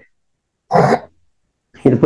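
A person clears their throat once, a short rasp a little under a second in, followed by speech resuming near the end.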